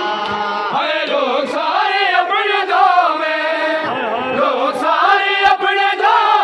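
A group of men chanting a noha, an Urdu lament, in unison, their many voices rising and falling together in a slow sung melody.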